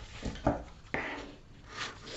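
Faint handling sounds: dressmaking scissors picked up off the cutting mat and the paper pattern moved, with a few soft clicks, then the scissor blades starting to cut into the paper near the end.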